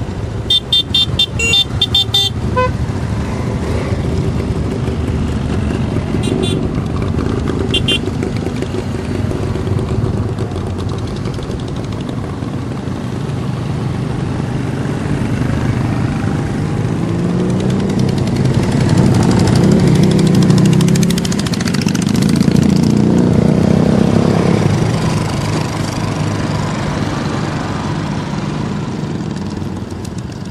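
A long procession of motorcycles riding past with engines running, the engine sound swelling loudest and rising and falling in pitch as bikes pass close in the second half. Horns beep in a quick series of short toots in the first couple of seconds, with a few more beeps several seconds later.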